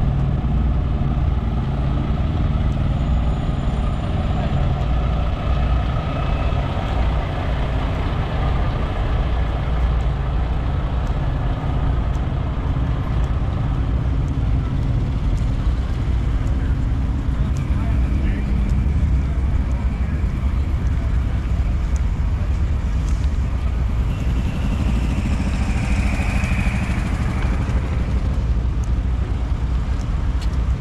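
Steady low rumble of idling diesel semi-truck engines, with a murmur of voices.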